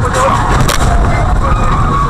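A road crash: a dump truck ploughing into cars, heard as a loud crunching collision with two sharp cracks in the first second.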